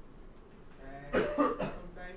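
A person coughing: a short burst of two or three coughs about a second in.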